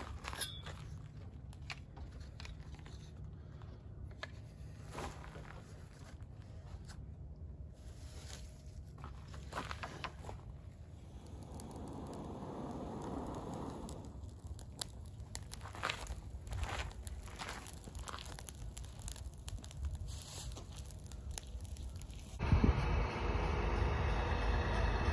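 Faint crunching, rustling and light clicks of dry leaves and tools being handled and stepped on, with a soft rushing swell lasting a few seconds about halfway. Near the end a steady low engine rumble starts suddenly.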